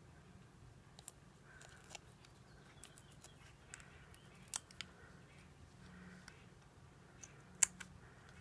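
Faint handling sounds of a small paper die-cut flower being fitted with foam adhesive dimensionals: scattered small clicks and soft paper rustles as the backing is peeled and the piece is pressed. The two sharpest clicks come about halfway through and near the end.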